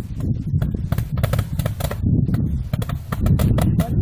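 Roman candles firing from two tubes strapped to a man's arms: a rapid, irregular string of pops as the stars are launched, over a steady low rumble.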